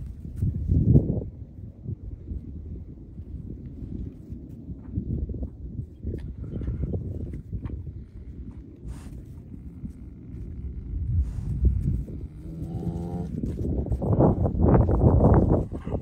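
Large dogs growling in rough play: low rumbling growls that come and go, with a short higher-pitched whining call about thirteen seconds in and the loudest growling near the end.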